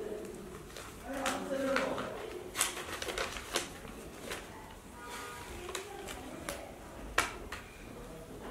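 Paper rustling and sharp clicks of a pen being uncapped and handled as a document is signed, with a short stretch of a person's voice about a second in.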